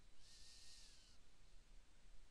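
Near silence: faint room tone with a low hum, and one soft breath at the microphone lasting about a second, a little after the start.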